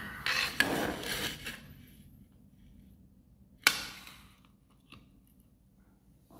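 A sigh and the rustle of small parts being handled, then one sharp clack of a hard object set down on a tabletop about three and a half seconds in, followed by a couple of faint clicks.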